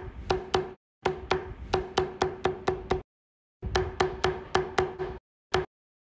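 A mallet striking a metal beveling stamp into leather on a granite slab, in quick runs of sharp taps about four or five a second, each with a brief ringing tone. Three runs are separated by short pauses, with a single last tap near the end.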